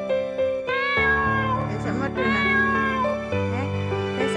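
A domestic cat meowing twice, two long drawn-out meows, over steady background music.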